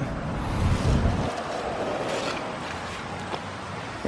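Rustling of cucumber leaves and vines with handling noise as a cucumber is picked. A low rumble on the microphone fills the first second or so, then a steady rustle with a few faint crackles.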